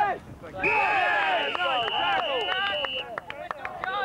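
Referee's whistle blown in one long, steady blast of about two and a half seconds, signalling the play dead, over shouting voices from players and spectators.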